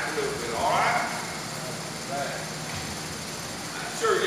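A man's voice preaching, a short phrase about half a second in and a fainter one near two seconds, then only a steady hum of the hall.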